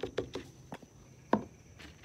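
Light taps and handling noises as a tomato vine is worked in paint on a paper plate, with one sharper knock about two-thirds of the way through.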